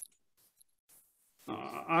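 Near silence with a few faint clicks, then about halfway in a man's voice starts with a drawn-out hesitant "uh, I".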